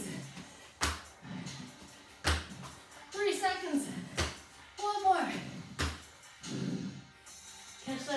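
Feet landing on a workout mat during jump-knee exercises: four thuds about a second and a half apart, over background music.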